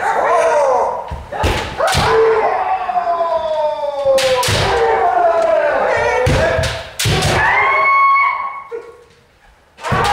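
Kendo practice: long, drawn-out kiai shouts from several fencers, overlapping and sliding down in pitch. They are punctuated by sharp cracks and thuds of bamboo shinai striking armour and stamping footwork on the wooden floor. The sound dies down briefly near the end.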